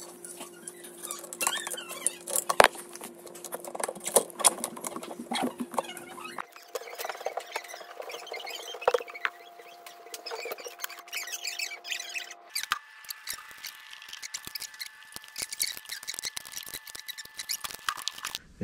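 Rapid clicks, taps and light rattles of a bicycle crankset and chain being handled as the crank arms are pulled out and refitted. Underneath is a steady hum that jumps higher in pitch twice, once about six seconds in and again about twelve seconds in.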